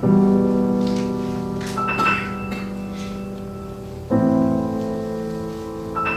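Grand piano and violin playing a slow passage. A low, sustained piano chord is struck at the start and another about four seconds in; each rings and slowly fades, with high held notes above them, as the piece's repeating chords go round.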